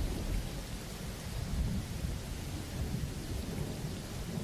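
Rain-and-thunder ambience closing out a song: an even hiss of rain over a low rumble of thunder, with no beat, fading lower.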